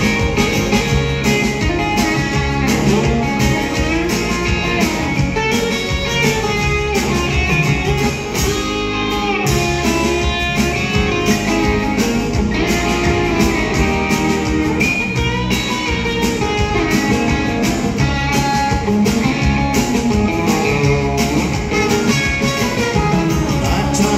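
Live country band playing an instrumental break, guitars to the fore over drums and bass with a steady beat.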